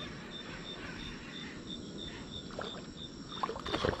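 Night-time dockside ambience: water lapping against the dock under an even hiss, with a thin high chirp repeating about three times a second, typical of an insect, and a few faint clicks near the end.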